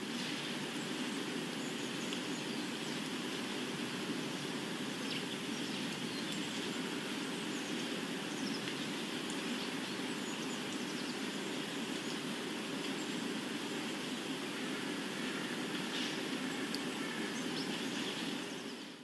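Steady ambient background noise with no speech or music, and a few faint, brief high chirps now and then.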